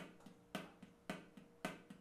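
Drumstick striking a rubber practice pad with the left hand in alternating down and up wrist strokes: a louder accented down stroke about twice a second, each followed by a softer up stroke played with just the stick tip.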